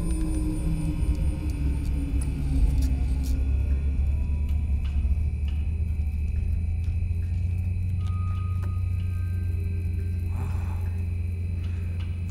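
Film soundtrack music over a deep, steady low drone, with a low tone sliding downward in the first couple of seconds.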